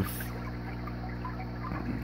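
Water trickling steadily in a hydroponic tub, over a low, even hum from its circulating pump.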